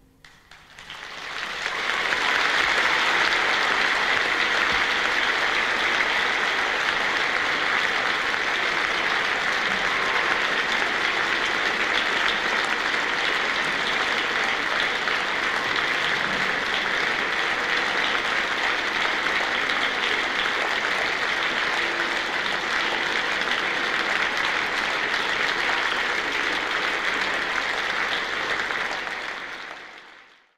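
Concert audience applauding. The clapping swells up over the first couple of seconds, holds steady, and fades out near the end.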